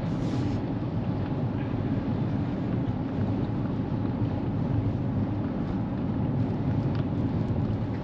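Steady low rumble of road noise inside a Kia's cabin while cruising at highway speed.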